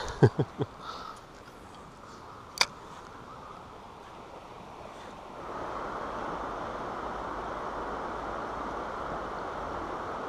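Steady rush of river water over a low weir, starting about five and a half seconds in and running on evenly. Before it the riverside is quiet, with a short laugh at the very start and a single sharp click a couple of seconds later.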